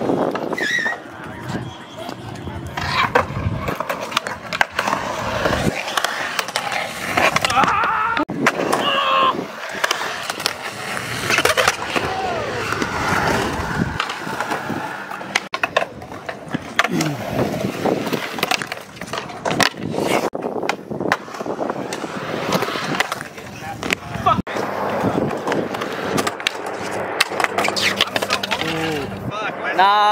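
Skateboards on a concrete skatepark: urethane wheels rolling over the concrete, broken up throughout by sharp clacks and slaps of tails popping and boards hitting the ground.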